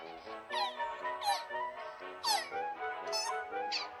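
Asian small-clawed otter squeaking in short, high, falling chirps, about four times, over background music.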